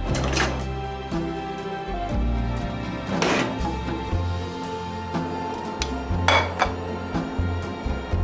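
Background music with a steady bass line, with three short clatters of metal kitchen utensils over it, about three seconds apart, as they are handled in a drawer and laid on a table.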